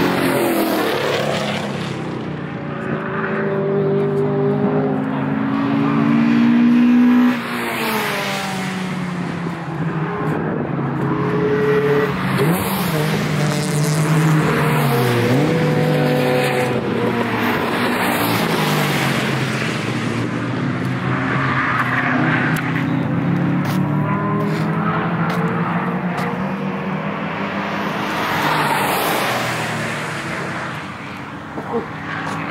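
Cars lapping a race track, several engine notes overlapping and rising and falling as the drivers accelerate, shift and lift off; the loudest stretch builds to about seven seconds in, then drops away suddenly.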